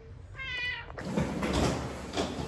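A cat meows once, a short high call about half a second in. From about a second in, a steady rushing noise takes over.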